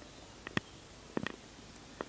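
A few soft mouth clicks and lip smacks over quiet room tone, in two small clusters about half a second and just over a second in.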